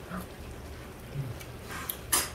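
Faint mouth sounds of someone chewing a thick piece of pork belly, with a brief low hum about a second in and a light click near the end.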